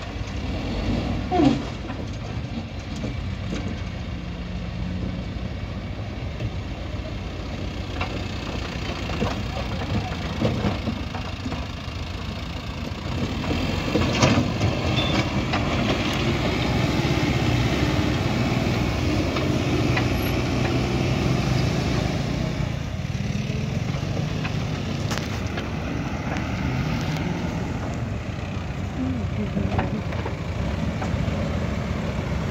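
Backhoe loader's diesel engine working hard alongside a tractor engine as the loader pushes a stuck tractor and trolley. The engine noise is steady, grows louder about halfway through and stays up, with a few short knocks.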